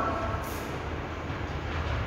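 Steady low hum of room noise with a faint brief high scrape about half a second in.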